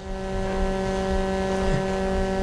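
Steady electrical mains hum in the sound system: a constant low buzz with a ladder of higher tones above it, unchanging throughout.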